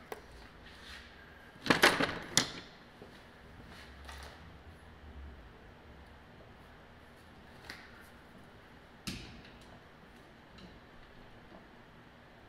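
Metal hand tools and parts clattering as they are picked up and handled: a loud cluster of clanks about two seconds in, another sharp clank about nine seconds in, and light clicks between.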